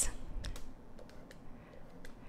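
A few faint, scattered clicks of computer input during a pause in speech, over a low background hum.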